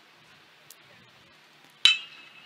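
A metal baseball bat striking a pitched ball: one sharp ping near the end, with a short ringing tail, over faint ballpark ambience.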